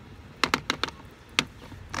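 A quick run of about four sharp clicks and taps from a hand working the trolling motor's telescopic tiller handle, then one more click a little after the middle.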